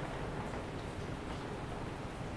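Steady low background noise, room tone, with no distinct sound events.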